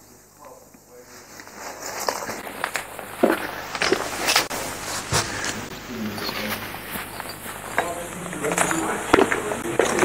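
Indistinct background voices, with scattered sharp clicks and knocks; quiet for about the first two seconds, then louder.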